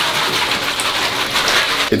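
Bath tap running into a filling bathtub, a steady rush of water, while coarse pink Himalayan bath salt crystals are poured from a plastic bag into the water.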